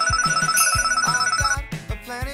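Ringing, bell-like sound effect with a fast trill over background music with a steady beat. The ringing stops about one and a half seconds in, and the music carries on.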